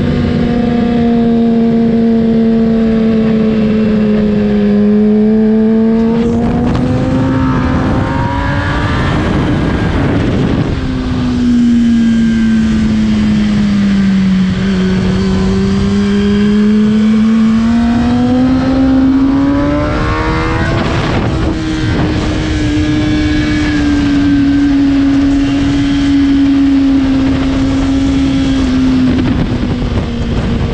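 A racing motorcycle engine running hard, its note falling and rising over several seconds at a time as it slows and accelerates, over a constant rumble of wind and road noise.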